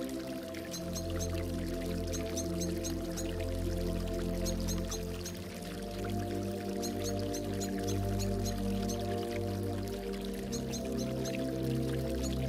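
Slow ambient synth music, sustained chords shifting about every five seconds, with gurgling water and a small bird's short high chirps in quick groups of three or four mixed in.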